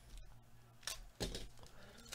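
A foil trading-card pack wrapper being torn and pulled open by gloved hands: a few faint, short crinkles, about a second in and again near the end.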